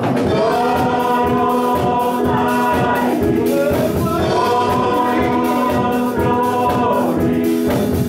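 Gospel worship song: a group of voices singing long held notes over instrumental accompaniment with a steady beat.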